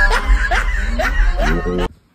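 A voice snickering in four short rising-and-falling snickers over background music with a steady bass. Everything cuts off suddenly near the end.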